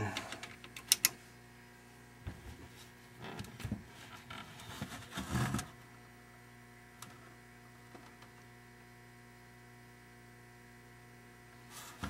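A few sharp clicks about a second in, then scattered soft knocks and rustles from hands handling a small electronic test instrument, over a faint steady electrical hum.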